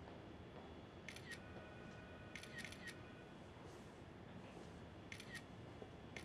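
A few faint, sharp clicks in small groups over a near-silent room: a pair, then three, then another pair.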